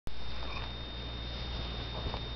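Room tone: a steady hiss with a low hum and a thin, steady high-pitched whine, with a couple of faint small rustles. No drums are played.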